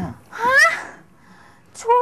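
A short, high-pitched exclamation like a gasp of surprise, its pitch rising sharply. Speech starts again near the end.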